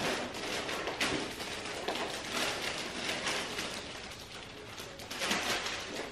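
Groceries being unpacked from a canvas tote bag: an irregular rustling and crinkling of bag and wrapping, with small knocks as items are handled and set on the table.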